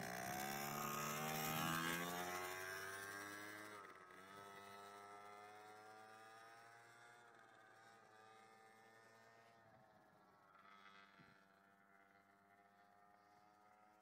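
Small engine of a children's mini quad bike pulling away, its pitch rising over the first couple of seconds, then running steadily and fading as it drives off into the distance.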